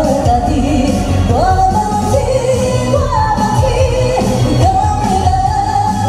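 A woman singing a Taiwanese song into a microphone over loud amplified band accompaniment. She holds long notes, some sliding up into pitch.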